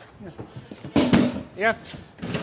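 A single loud clatter about a second in, cookware or a dish knocked down on a kitchen counter, followed by a man's short call.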